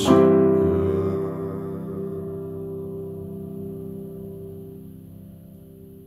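Piano chord struck once at the start and left to ring, dying away slowly: the closing chord of the song.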